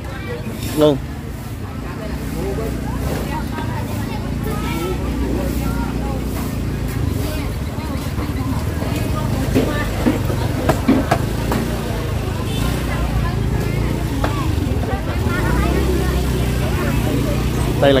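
Street market ambience: a steady low rumble of traffic under scattered voices of vendors and shoppers, with a few sharp knocks.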